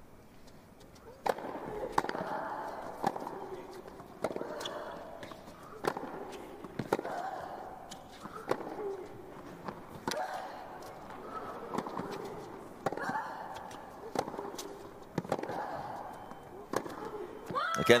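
Tennis serve and rally on a hard court: sharp racket strikes and ball bounces, the first about a second in, then a dozen or so at irregular gaps of one to two seconds. The players' voiced grunts come with their shots.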